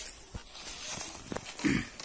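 Embroidered saree fabric rustling softly as it is handled and spread out by hand, with a few light taps and a short breathy sound near the end.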